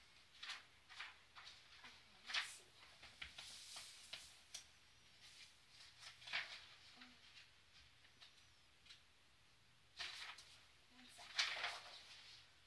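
Pages of a paperback book being turned and handled: soft, irregular paper rustles, with a cluster of louder ones near the end.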